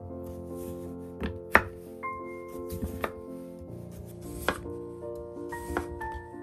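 Kitchen knife slicing through a peeled daikon radish and knocking on a wooden cutting board: about six sharp cuts at an unhurried, uneven pace. Soft background music plays underneath.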